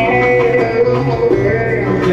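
Bağlama plucked with a plectrum, playing an instrumental melody line in Turkish folk music over a steady keyboard backing.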